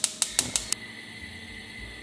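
Gas cooktop's electric spark igniter ticking rapidly, about six clicks a second, as the burner knob is turned, stopping under a second in. A steady soft hiss follows as the burner lights.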